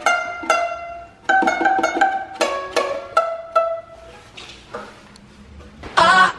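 Ukulele picked in single notes, a short plucked melody of about two notes a second that dies away around four seconds in.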